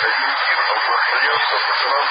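CB radio receiver on the 27 MHz citizens' band giving a steady, loud hiss of static, thin and cut off in the treble. Faint, garbled voices of distant stations come through it as the band opens to long-distance propagation, with a word near the end.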